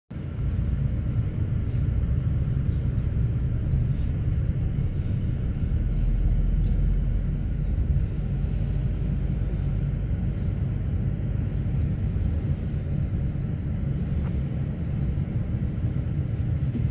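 Steady low rumble of road and engine noise inside a moving bus.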